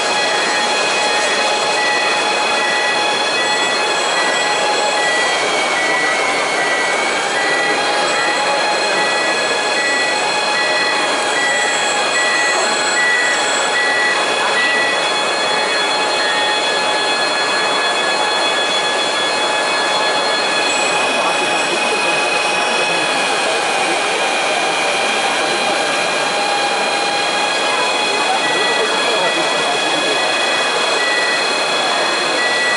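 Electric motors of radio-controlled PistenBully snow-groomer models and their snow-blower attachment whining at several steady high pitches that shift now and then with the throttle, over a steady rushing noise and crowd murmur.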